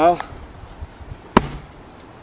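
A single sharp blow of an axe biting into a large birch round about a second and a half in, with a brief low ring after the hit. It is one strike partway through the split, widening a crack across the log.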